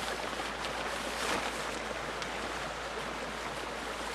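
Light rustling of a silnylon rain poncho as it is pulled on over the head and settled on the shoulders, over a steady rushing background noise.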